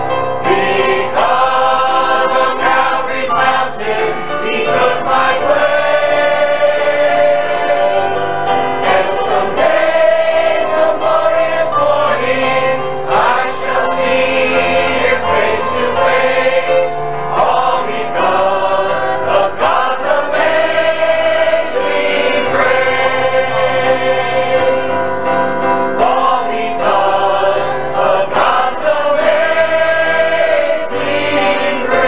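A church choir of men and women singing a gospel song together, with long held notes in steady, continuous singing.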